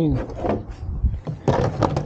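A window air conditioner and a wooden tailgate panel handled in a truck bed: a scrape early, then a short clatter of knocks past the middle.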